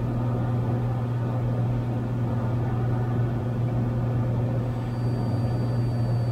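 Cessna 182's piston engine and propeller droning steadily in flight, heard inside the cabin as an even, low hum. A faint high tone comes in about five seconds in.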